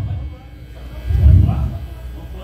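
Indistinct voices talking in a room, with a low rumble swelling about a second in.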